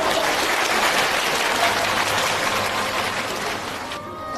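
Studio audience applauding, a dense steady clatter of many hands that tapers slightly toward the end.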